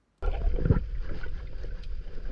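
Underwater sound picked up by a diving camera in its waterproof housing as the diver moves slowly through the water: a steady low rumble and hiss of water, cutting in a moment after the start.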